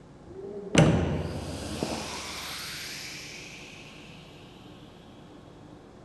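Heavy stainless-steel containment door swinging shut with a loud thud about a second in and a smaller click a second later. A hiss of air follows and fades over a few seconds as the door seals.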